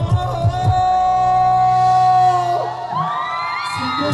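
Male pop singer belting a long, held high note live over a band. Near the end the band drops out and the audience screams and cheers.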